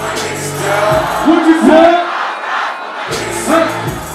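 Loud hip-hop track playing at a live club show, with a pitched vocal line over it. The bass drops out for about two seconds in the middle, then comes back in.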